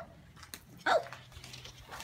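One short bark-like call about a second in, falling quickly in pitch, with another starting right at the end.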